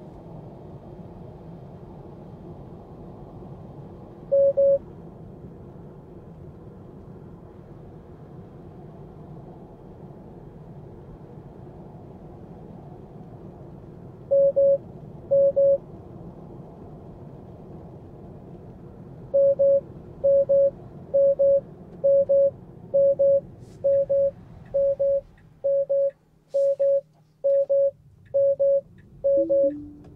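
Tesla Model 3 warning chime beeping over steady road and tyre noise inside the cabin. It sounds once, then twice, then repeats about once a second for the last ten seconds. It ends in a falling two-note chime as Autopilot disengages. The road noise drops away near the end as the car slows.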